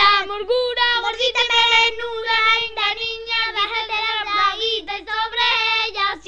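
A child singing unaccompanied in Spanish, one continuous melody with long held notes.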